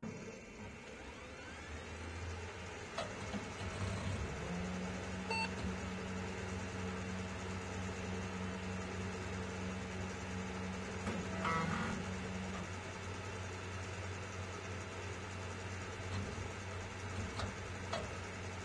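Room tone: a low steady hum throughout, with a second, slightly higher hum that comes in about four seconds in and stops about eight seconds later. A few faint clicks.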